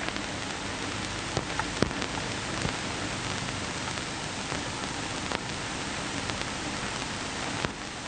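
Steady hiss with a few scattered clicks and crackles: the surface noise of an old 1930s optical film soundtrack, with no other sound above it.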